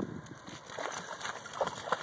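A dog splashing as it runs into shallow lake water, a few faint, scattered splashes.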